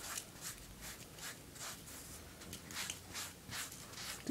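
Faint, repeated soft swishes of a powder puff wiped quickly back and forth over a wet, sandy hand and between the fingers, about three strokes a second, brushing the sand off.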